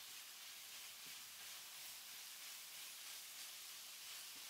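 Faint, steady sizzle of minced meat and diced carrot, celery and shallot frying in a pan.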